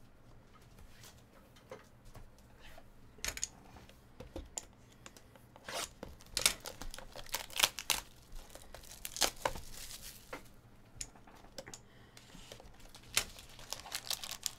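Shrink-wrap plastic being torn and crinkled off a cardboard trading-card box, as a string of short, irregular rips and rustles, busiest in the middle.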